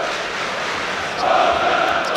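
Football stadium crowd in a stadium, with massed chanting from the fans swelling up a little over a second in.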